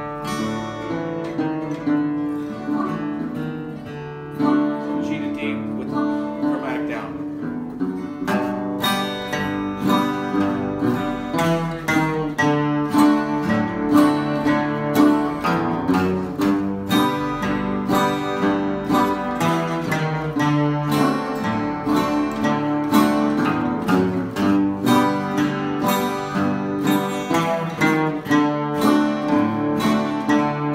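Capoed acoustic guitar played in oldtime style: bass notes and strummed chords, with bass runs walking between the chords. The playing is lighter at first and settles into steady rhythmic strumming about eight seconds in.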